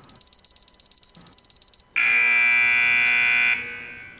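Electronic timer beeping rapidly, about seven beeps a second, which stops and is followed by a buzzer that sounds for about a second and a half and then fades. It signals that a timed 30-second turn is up.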